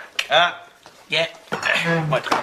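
Men's voices in short exclamations, with a brief clink of a hard object against the tabletop near the start.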